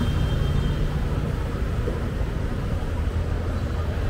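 Steady low rumble of city street background noise, traffic-like, with no distinct events.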